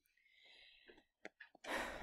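A faint, short breathy exhale, then a few soft clicks, with speech starting just before the end.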